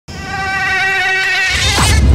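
Mosquito in flight, its wingbeat whine steady and high-pitched with a buzzy edge, fading in at the start. Near the end a falling sweep and a rising low rumble swell up under it.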